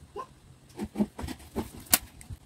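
A run of short animal calls, then a sharp click just before the end.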